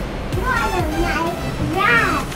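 Young children's voices calling out in short, high, rising and falling calls, with music in the background.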